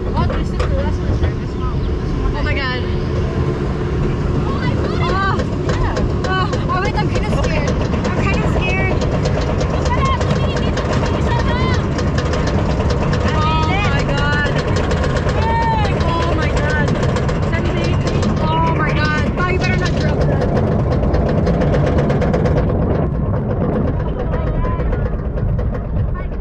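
Roller coaster ride: a steady loud rumble of the train on the track and wind on the microphone, with riders' voices and shouts rising and falling over it, the hiss easing off near the end.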